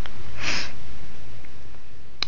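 A person's short sniff through the nose about half a second in, over a steady low hum.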